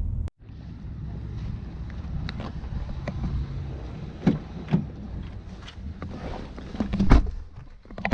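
A car door, a Ford Fusion's, is handled over a steady background rush: a few light clicks and knocks as it is opened, then it shuts with a loud thump about seven seconds in.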